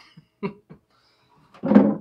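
A few short knocks as a hinged wooden box lid is lifted open, then a man laughing near the end.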